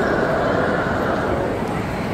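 Steady, indistinct chatter of many people, with no single voice or words standing out.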